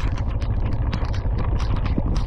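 Heavy storm rain, with a dense, irregular run of sharp drop hits close to the microphone over a steady low rumble.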